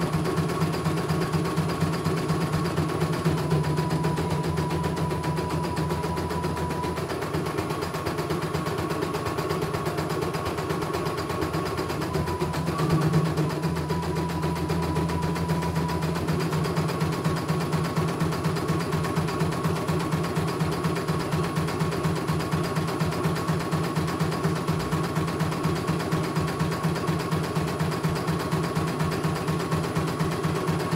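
CNY E900 computerized embroidery machine stitching a design: a fast, even needle rhythm over a steady motor hum. The motor tone drops slightly in pitch twice, a few seconds each time.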